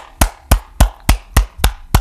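A steady run of sharp, evenly spaced strikes, about three and a half a second, all at much the same loudness.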